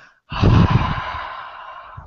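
A man's long, loud exhalation, a deep sigh blown onto his headset microphone. It starts about a third of a second in and tails off over about a second and a half.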